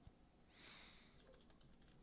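Near silence: room tone in a pause between speech, with one faint click at the start and a soft hiss about half a second in.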